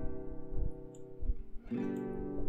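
Background music played from a media player: strummed acoustic guitar chords, one chord ringing and fading, then a new chord struck near the end.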